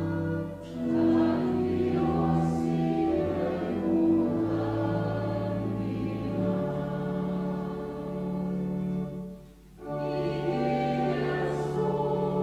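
Congregation singing a hymn together in long held notes, with two brief breaks between lines.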